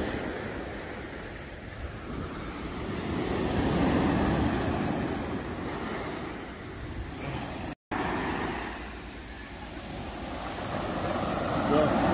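Small surf breaking and washing up a sandy beach, a rushing wash that swells and fades twice, with wind buffeting the microphone.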